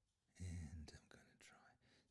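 A man's brief, quiet whispered murmur about half a second in; otherwise near silence.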